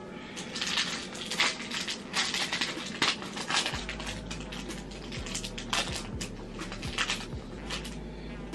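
Foil wrapper of a Yu-Gi-Oh! Metal Raiders booster pack crinkling and tearing as it is pulled open by hand, a quick run of sharp crackles.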